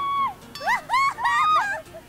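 Young women screaming and squealing at a high pitch: one held scream at the start, then a quick run of short shrieks that rise and fall, some overlapping.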